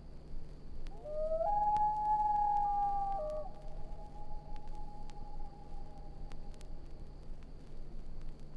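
Common loon giving one long wailing call: a short lower note steps up to a higher note held for about two seconds, then trails off faintly over several more seconds. Vinyl surface clicks and a low hum run underneath.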